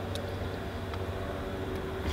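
Steady low mechanical hum in the background, with one faint click of a key ring being handled just after the start.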